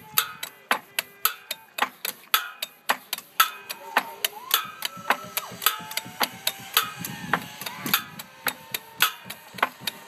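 Improvised percussion: a group tapping and knocking on a wooden dock railing, a quick loose rhythm of sharp clicks about three or four a second.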